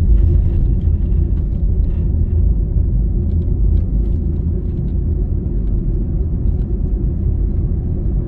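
Steady low rumble of a car being driven along a highway: engine and tyre noise heard from the moving car.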